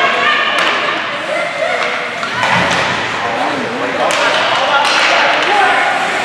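Spectators' voices and calls in an ice hockey arena, with a few sharp knocks from sticks and puck during youth hockey play.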